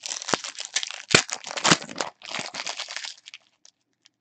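Foil wrapper of a Prizm Euro 2016 trading-card pack crinkling and tearing as it is ripped open by hand, a dense crackle with sharp snaps that pauses briefly about two seconds in and stops a little after three seconds.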